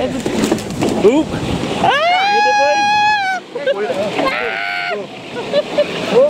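A long, high-pitched scream held for over a second, then a shorter, higher cry, over the steady scraping hiss of a Madeira wicker toboggan's wooden runners sliding fast down a paved street.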